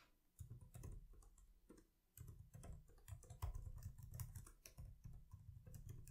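Faint typing on a computer keyboard: irregular quick key clicks as a username, e-mail and password are typed into a web form, with a short pause about one and a half seconds in.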